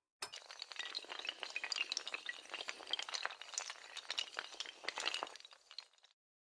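Sound effect of many small hard tiles clattering and clinking together. It is a dense, rapid run of clicks that starts suddenly and tails off near the end.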